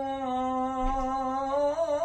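A man's voice chanting in the melodic style of Quran recitation, holding one long steady note that wavers slightly near the end.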